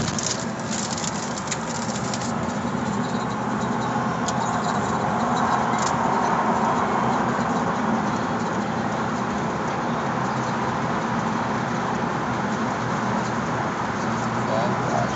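Road noise heard inside a moving car's cabin: a steady hum of tyres and engine, growing somewhat louder about halfway through as the car drives through a road tunnel.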